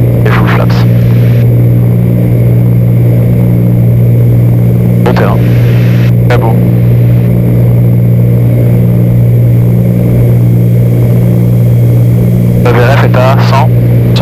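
Cessna 310Q twin engines and propellers droning steadily at one constant pitch on approach power during the final approach, heard inside the cockpit.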